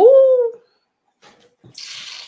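A single short vocal sound, about half a second long at the very start, that rises in pitch and then holds. A faint breathy hiss follows near the end.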